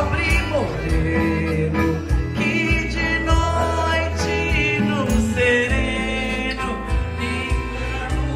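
Live country-style music played through a PA system, with a keyboard and a steady bass beat, and a woman singing into a microphone.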